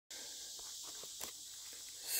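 Faint footsteps on a creek bed of loose shale and gravel, a few soft crunches, over a steady high hiss.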